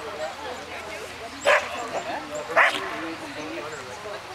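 A dog barking twice, about a second apart, sharp and loud over a low murmur of voices.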